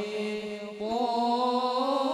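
Boys' voices chanting an Arabic sholawat, a devotional song praising the Prophet, without instruments. A held note gives way to a new, louder phrase that starts about three-quarters of a second in and rises in pitch.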